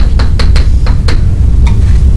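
Chalk tapping and scraping on a blackboard as letters are written: about six sharp clicks over the first second and a half, over a steady low rumble.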